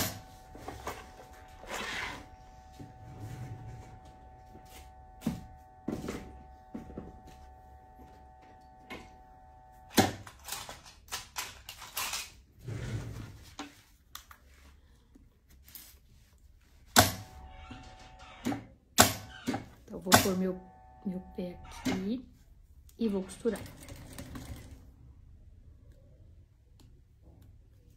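Industrial sewing machine humming steadily for stretches, with clicks and knocks from handling the fabric and the machine.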